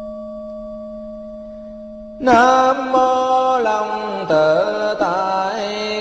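A struck bell rings with a steady, slowly fading tone. About two seconds in, a loud Buddhist chanting voice comes in, sliding between long held notes in a melodic recitation.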